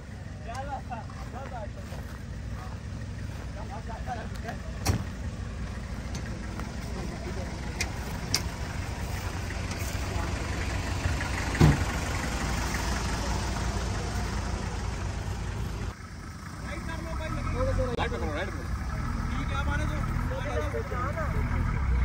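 Off-road 4x4 engines idling and creeping along at low speed, a steady low rumble that grows louder in the second half. A few sharp clicks and one loud knock come about halfway through.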